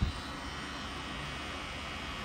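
Pen-style rotary tattoo machine running with a steady whir while red ink is filled in, with a short knock right at the start.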